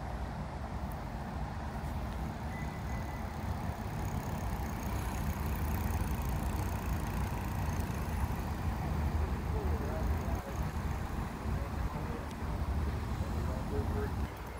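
Steady outdoor background noise, mostly a low, uneven rumble, with a faint high hiss above it.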